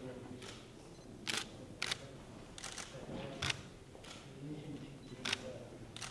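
Single-lens reflex camera shutters clicking several times at irregular intervals, some in quick pairs, over faint murmured conversation in the room.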